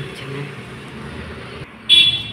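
A vehicle horn gives one short, loud toot near the end, over a man talking.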